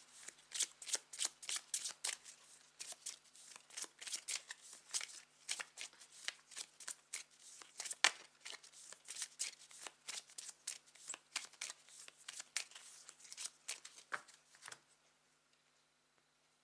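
A pile of Jack O' Lantern Tarot cards being shuffled by hand: a quick, uneven run of soft card slaps and swishes, several a second, that stops about a second before the end.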